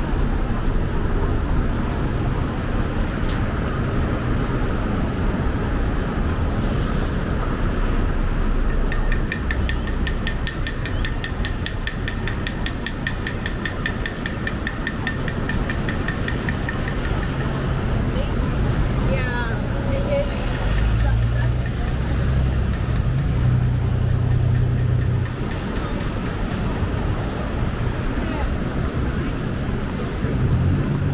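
Street and promenade ambience during a walk beside a road: a steady low rumble of traffic and wind on the microphone, with passersby's voices. About a third of the way in, a fast, high repeating chirp runs for about eight seconds.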